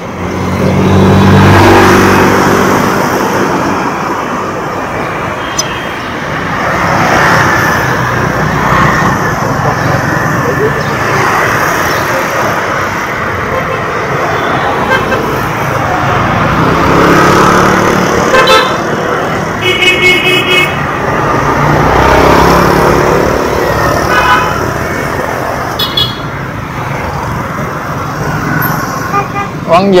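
Busy city street traffic: motorbike and car engines running past, with several short vehicle horn toots, including a run of quick beeps about twenty seconds in.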